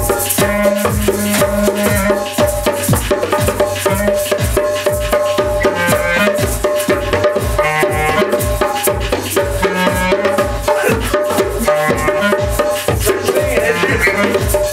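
Djembe played by hand over a steady looping backing beat with a regular bass pulse, with held instrument notes sounding above.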